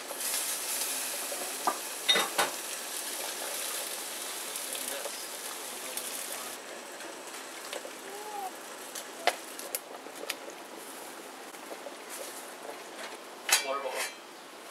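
Water at a rolling boil in a stainless steel stockpot, a loud bubbling hiss that cuts off about six seconds in, then a quieter bubbling. A few sharp clinks of the lid and pot, with a louder clatter near the end.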